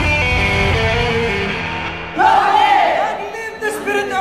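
Music that ends about halfway through, followed by a group of women's voices shouting and cheering together.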